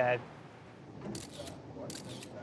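Camera shutter clicks from press photographers' SLR cameras, a short cluster about a second in and another near the end.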